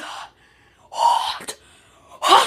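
A boy's single loud, breathy open-mouthed gasp about a second in, his mouth burning from hot sauce.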